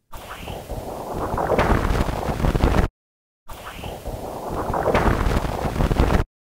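Audified solar-wind magnetometer data from the Wind spacecraft, played twice with a short gap between. Each pass is a raw, noisy rush that grows louder, with a faint whistle falling in pitch near its start. The shock of a passing coronal mass ejection is heard as a percussive thud about midway through each pass.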